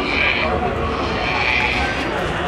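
Crowd chatter, with two short high animal calls rising above it: one at the start and one just before the end.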